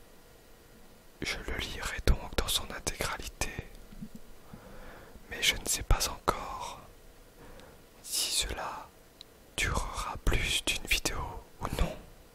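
A person whispering in French, in four short spells of words with pauses between them.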